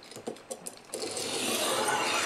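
A few light clicks as a kitchen knife and its 3D-printed plastic angle guide are set on a sharpening stone, then a steady scrape from about a second in as the blade and guide slide along the stone in a sharpening stroke.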